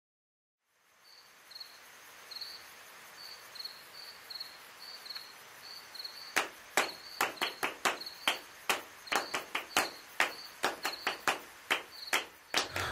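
High, steady insect chirping, crickets, over a faint hiss. From about six seconds in, sharp clicks join at two or three a second and grow louder.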